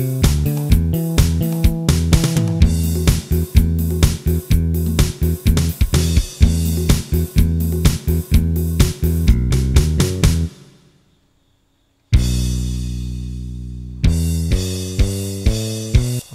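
Karaoke accompaniment from an ELF 707 accompaniment machine playing with drums, bass and guitar on a steady beat. The music stops about ten seconds in and restarts a second and a half later with a held chord.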